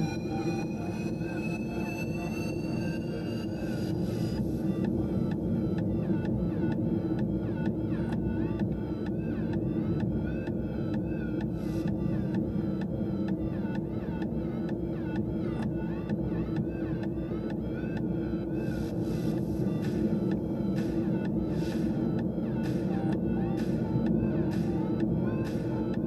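Steady low rumble of a car driving along a mountain road, heard from inside the cabin: engine drone and tyre noise. A few faint rising tones fade out in the first four seconds.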